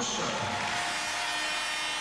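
Large arena audience applauding: a steady wash of clapping at an even level.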